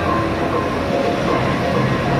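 Bumper cars running around the rink: a steady rumbling din of the electric dodgem cars rolling on the floor, with faint tones mixed in.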